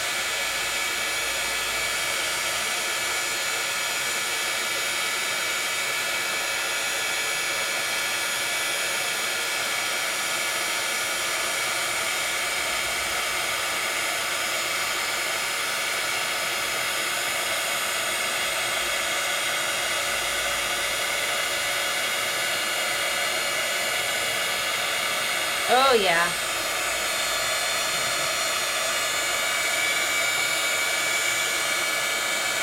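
Handheld craft heat tool blowing hot air steadily, drying a layer of crackle paste on cardstock so that it cracks.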